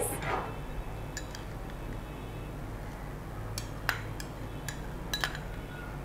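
A few light clinks of kitchenware between about one and five seconds in, over a steady low hum.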